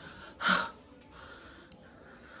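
A person's short breathy gasp about half a second in, close to the microphone, followed by low room noise.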